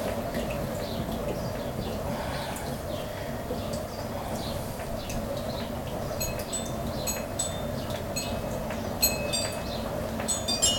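Electric potter's wheel running with a steady hum while wet clay is collared in by hand. From about six seconds in, wind chimes ring with short, high pings several times.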